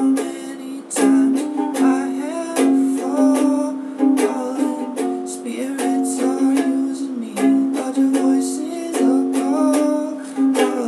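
Ukulele strummed in a steady rhythm, chords ringing between the strokes.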